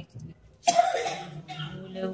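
A person coughs once, loud and sudden, about two thirds of a second in, and it fades into quieter voices.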